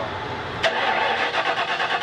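An old pickup truck's engine being started: a sharp click about two thirds of a second in, then the starter cranking rapidly and rhythmically.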